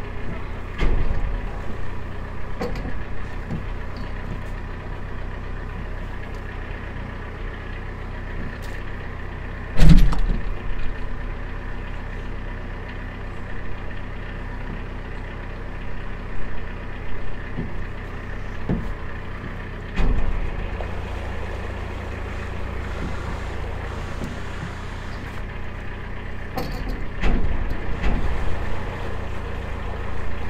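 A narrowboat's diesel engine runs steadily at low speed, and its low note grows louder about two-thirds of the way through. A few sharp thumps break in, the loudest about ten seconds in.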